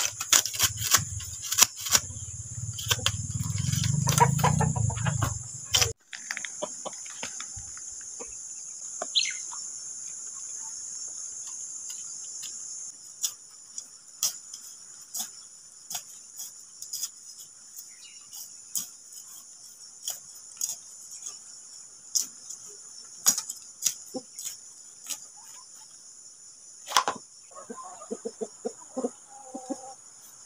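Steady high-pitched chorus of crickets, with scattered sharp clicks and snips of a hand blade cutting weeds at the ground. A low wind rumble sits on the microphone for the first six seconds, and chickens cluck near the end.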